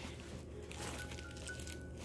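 Quiet rustling of fabric scraps and a bag being handled as a hand digs through them, with no sharp knocks.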